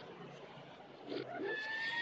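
Reversed film soundtrack playing through a TV speaker: garbled backwards sound with a held high tone, starting about a second in after a quiet start.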